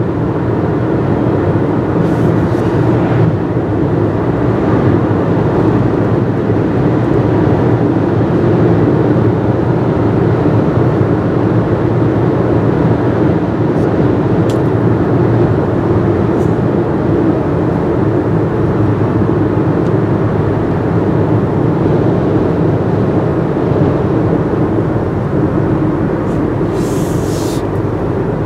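Steady road and engine noise from inside a moving car's cabin, with a brief higher hiss near the end.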